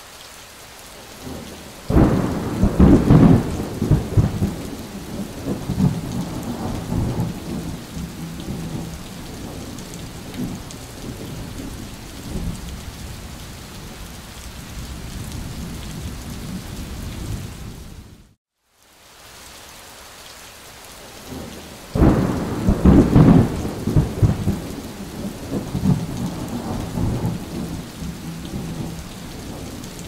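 Steady rain with rolling thunder: a loud low rumble breaks about two seconds in and fades away over several seconds. The sound cuts out for a moment about two-thirds of the way through, then the same pattern of rain and a second thunder roll starts again.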